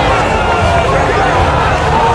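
A crowd of spectators shouting and yelling over one another, a dense, steady babble of many voices with no single voice standing out.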